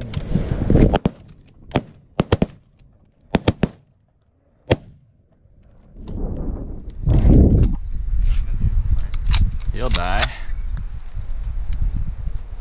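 A volley of shotgun shots from several hunters: about eight sharp cracks in the first five seconds, some in quick doubles and triples. After that comes a steady low rumbling noise with a voice calling out.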